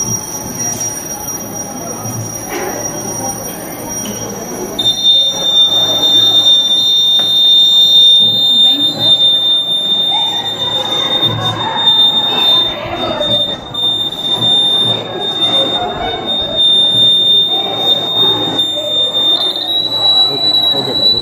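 Electronic buzzer on a battery-powered student circuit giving a steady high-pitched tone that starts about five seconds in and keeps sounding, over the chatter of a crowded room.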